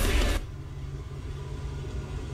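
Metal music cuts off shortly after the start, leaving a Mercedes SUV's engine idling as a low, steady rumble.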